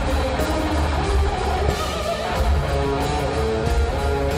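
A heavy rock band playing live, with an electric guitar riff over a heavy bass.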